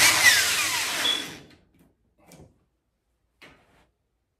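Corded electric drill driving a screw into the dryer's sheet-metal front panel to refasten it, running for about a second and a half, its pitch falling as it winds down. Two faint clicks follow.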